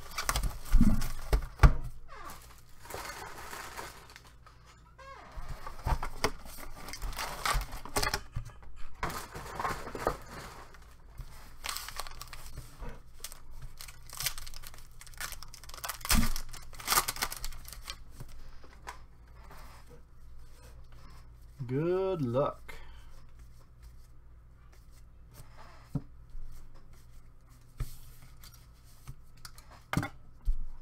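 Foil wrapper of a baseball card pack being torn open and crinkled by gloved hands, with sharp crackles and rustles from handling the cardboard box and packs.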